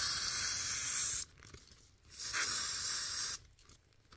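Aerosol can of CRC mass air flow sensor cleaner spraying into a plastic zip bag in two bursts. The first stops about a second in, and a second burst of about a second starts just after halfway.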